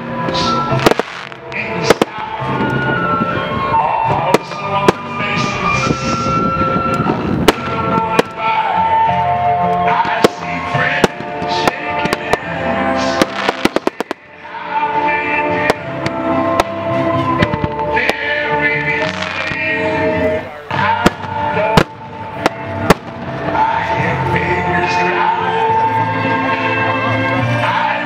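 Music playing with firework bangs and crackles over it: sharp single reports scattered throughout, a fast run of cracks a little before the middle, and a brief lull in the music about halfway.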